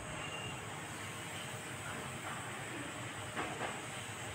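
Steady outdoor background hiss, with a couple of short clicks about three and a half seconds in.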